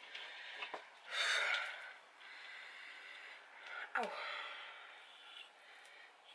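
A person's breath sounds close to the microphone, loudest as a short breathy burst about a second in, with a few small clicks and a brief falling voice sound about four seconds in.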